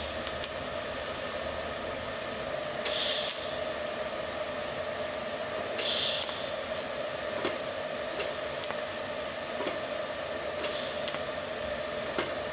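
TIG welding arc from an Everlast welder, laying filler rod onto steel: a steady hiss over a steady hum. Short, sharper hisses come about three times.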